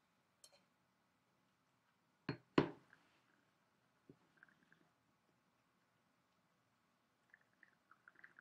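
A wine glass knocking twice on a table, quickly one after the other, about two seconds in. Then faint slurping and swishing as the wine is worked around the mouth.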